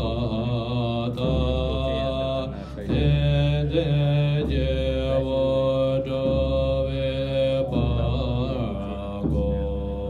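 Tibetan Buddhist monks chanting a mantra together in a puja, long held notes in phrases a few seconds long over deep low voices.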